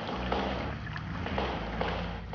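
Cartoon rain sound effect: a steady hiss of falling water with regular swishing pulses about twice a second.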